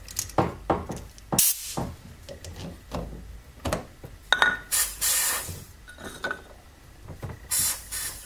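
Short bursts of compressed air hissing from a blow gun nozzle pressed into a brake caliper's fluid inlet, blowing the caliper pistons out of their bores. There are three bursts, the longest in the middle, between sharp knocks and clicks from the metal caliper being handled.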